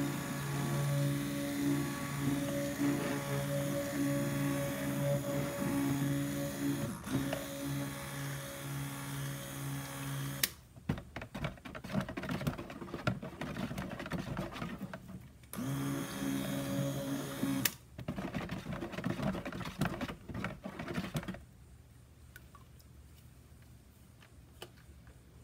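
Cuisinart Smart Stick immersion blender running steadily in a bucket of soap batter, switching off with a click about ten seconds in. The blender head then sloshes and knocks as it is stirred through the batter by hand, with a second short run of the motor a few seconds later, before things go quiet near the end.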